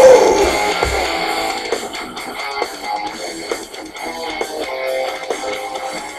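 Recorded song playing as a backing track: band music led by electric guitars, loudest at the start and then steady.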